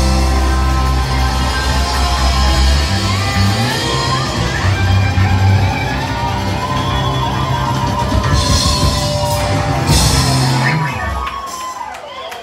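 Live rock band with electric guitars, bass and drums playing the last bars of a song, with cymbal crashes near the end. The music stops about eleven seconds in as the song finishes.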